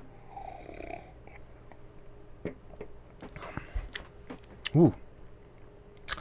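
A person sipping beer from a glass: a short slurp in the first second, then a few faint mouth clicks and swallows, and a voiced "ooh" near the end. The beer has lost most of its carbonation, so no fizz comes with the sip.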